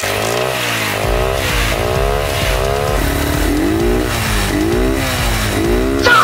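Motorcycle engine starting abruptly and revving up and down over and over, its pitch rising and falling about twice a second over a low rumble.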